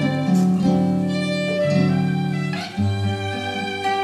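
Violin and guitar playing a melody together: held violin notes over guitar accompaniment, with a lower bass note coming in near the end.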